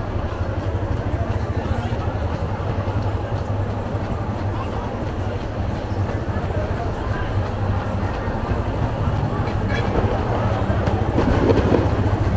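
Busy street ambience: many people talking over a steady low hum from cars creeping through the crowd in slow traffic. A nearby voice gets louder near the end.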